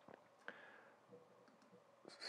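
Near silence broken by a few faint computer mouse clicks: one at the very start, one about half a second in and a softer one just after a second.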